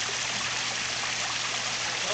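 Water from artificial rock waterfalls pouring steadily into a swimming pool, a continuous even splash.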